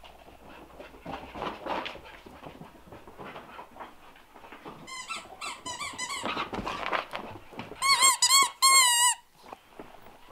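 Rubber squeaky dog toy squeaked over and over. Short squeaks start about halfway through and build to a loud, rapid run of squeaks that stops about a second before the end. Soft scuffling comes before the squeaks.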